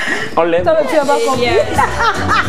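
A woman's voice, then a TV segment intro jingle comes in partway through with steady, sustained bass notes under it.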